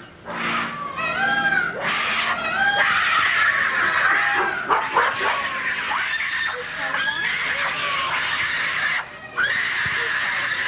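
Gorillas screaming during a fight between a young female and the dominant silverback: loud, overlapping screams that rise and fall in pitch, almost without pause, with a short break near the end.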